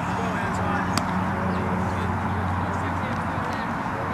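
Indistinct distant voices of players and spectators at an outdoor baseball game over a steady low hum, with a single sharp crack about a second in.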